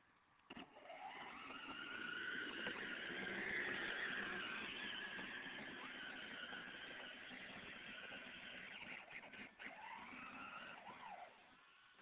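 A motor vehicle's sound with a whining tone that glides up and down. It swells from about half a second in, is loudest around four seconds in, then eases and stops about eleven seconds in.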